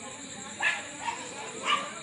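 Two short, sharp animal calls about a second apart, over a steady background hiss.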